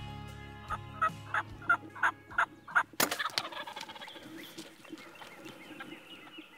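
Wild turkeys calling: about seven short, evenly spaced calls, then a loud gobble about three seconds in with a falling, rolling trail. Music fades out at the start.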